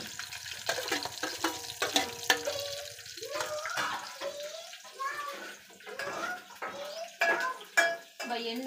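Steel lid and ladle clinking against a steel cooking pot, a string of sharp clinks in the first three seconds, over the watery hiss of the pot simmering on the gas stove.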